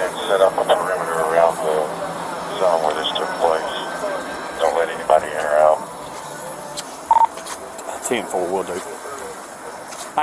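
Indistinct voices talking in the background, with a short beep about seven seconds in.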